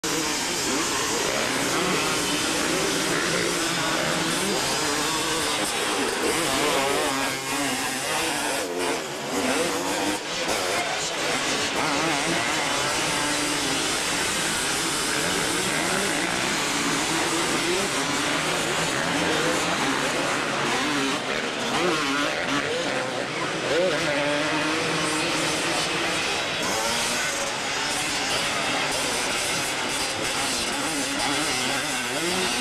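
Several motocross dirt bikes racing, their two-stroke engines revving up and down with the throttle as they pass and jump, one rider on a Kawasaki KX250.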